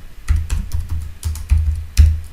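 Computer keyboard typing: a run of irregular key clicks as a line of text is typed.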